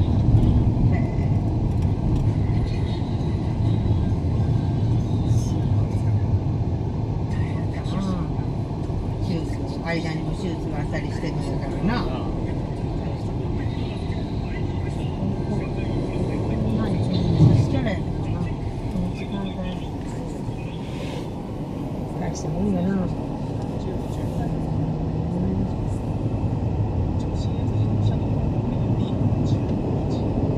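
Steady low rumble of tyre and engine noise inside a moving car's cabin at expressway speed, with a brief louder bump about two-thirds of the way through.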